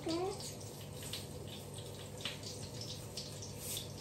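Hotdogs frying in oil: a steady sizzle, with a few faint ticks over it.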